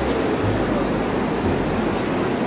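Steady wash of surf and wind on an open beach, with uneven low gusts of wind buffeting the microphone.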